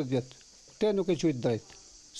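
A man speaking Albanian in a short phrase about a second in, over a faint, steady, high-pitched background hiss.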